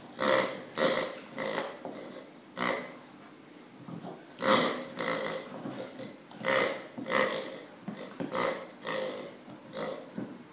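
A pink pig squeaky dog toy sounding each time a German Shepherd puppy bites down on it: about a dozen short, loud squeezes in uneven bursts.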